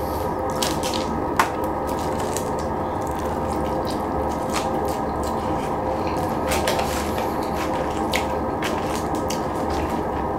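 Close-miked eating: wet chewing and mouth sounds with scattered sharp clicks, over a steady background hum.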